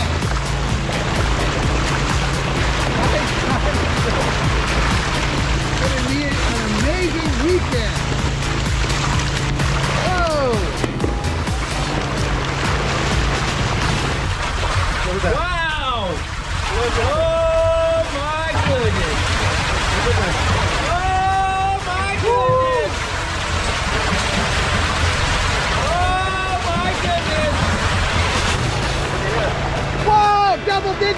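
Water gushing down a trout-stocking chute from a hatchery truck's tank, carrying a load of live trout, as a steady loud rush with a low hum underneath. From about halfway, voices call out over it.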